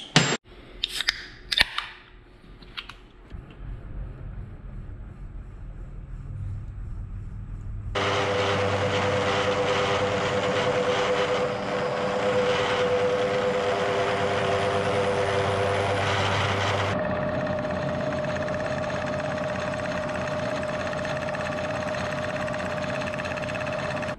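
Vertical milling machine cutting a steel spline part: a few clicks of metal being handled, a low motor hum, then from about eight seconds in a loud stretch of cutting with a steady whine, easing after about seventeen seconds into steadier running with a higher whine.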